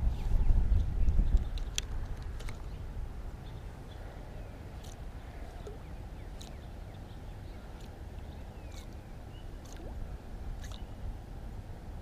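Wind rumbling on the microphone, strongest in the first second or so, then a steady low background with a few faint clicks.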